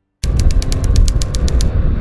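A 1.3-litre Mazda 2 hatchback driving off: a loud low rumble that starts suddenly, with a rapid rattle of about eight clicks a second over it that stops about a second and a half in.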